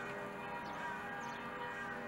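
Church bells ringing, several tones sounding together and held steadily.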